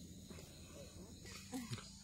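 Quiet outdoor background with faint, indistinct low sound, and a brief faint voice near the end.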